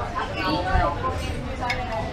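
Indistinct talking among diners, with a light clink of a fork or knife on a china plate near the end.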